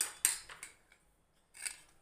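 A few short metallic scrapes and clinks of a kitchen knife and spoon against a steel pot, the loudest in the first half-second and one more near the end.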